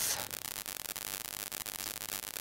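A quiet, steady hiss of microphone and room noise in a pause between spoken phrases, with no other distinct sound.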